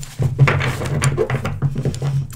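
Tarot cards being handled and shuffled, a quick irregular run of soft clicks and papery rustle, over a steady low electrical hum.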